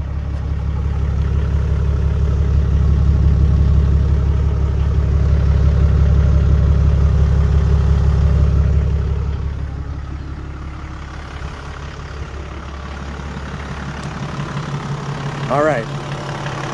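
Toyota Land Cruiser 80-series 24-valve diesel engine idling steadily, heard at its three-inch exhaust tailpipe. The sound swells over the first couple of seconds and drops to a quieter level about nine seconds in.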